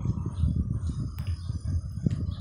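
Wind buffeting the microphone, an uneven low rumble, with a faint high tick about a second in.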